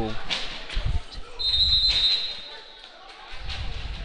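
A referee's whistle blown once in a gym, a short high blast lasting under a second, about a second and a half in. Before it come a couple of faint thuds that may be a basketball bouncing on the hardwood floor.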